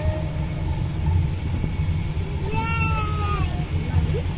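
Steady low rumble of an open shuttle cart driving along a paved road. A single short, high cry that falls a little in pitch comes about two and a half seconds in.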